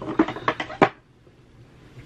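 Small items being handled on a table: a few sharp clicks and knocks in the first second, the last one loudest, then quiet room tone.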